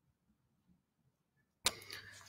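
Near silence, then a sharp click about one and a half seconds in as the live-stream audio cuts in, followed by faint room noise with a low steady hum.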